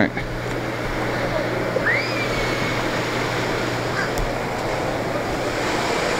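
Steady surf and wind noise on an ocean pier, over a constant low hum. About two seconds in, a single bird call rises in pitch and then levels off.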